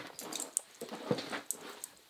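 Hands handling fabric on a table: soft rustling with a few small, irregular clicks as loose thread clippings are brushed aside.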